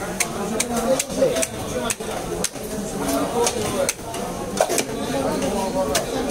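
Broad cleaver-like knife striking and tapping against a wooden chopping block while cutting rohu fish: a series of sharp knocks at uneven intervals, with voices talking behind.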